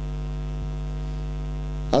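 Steady electrical mains hum picked up through the microphone and sound system: a constant low buzz at an unchanging level.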